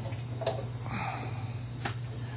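Steady low hum with two light, sharp clicks, one about half a second in and one near the end.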